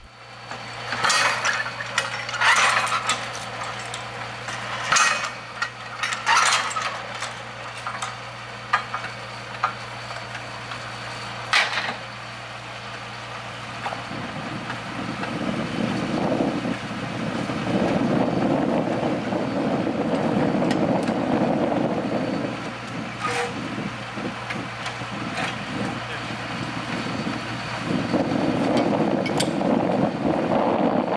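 Truck-mounted well-drilling rig's engine running with a steady hum, with several sharp knocks and clanks of metal during the first dozen seconds. From about halfway the engine noise grows louder and rougher.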